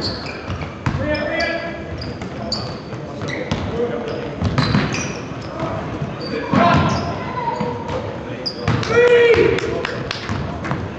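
Basketball game noise on a hardwood gym floor: a ball bouncing, short high sneaker squeaks and players shouting to each other, with a loud shout about nine seconds in, all ringing in the large gym.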